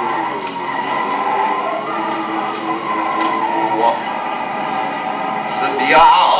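A man's voice holding drawn-out, slowly sliding pitched sounds, with a louder rising cry near the end.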